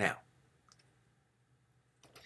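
A man says "now", then a single faint click a little under a second in, the click that advances the presentation slide, over quiet room tone.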